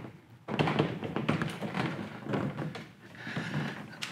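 Yakima Topwater rooftop cargo box being shifted and settled by hand on tripod stands: an irregular run of knocks, thuds and scraping handling noise, starting about half a second in.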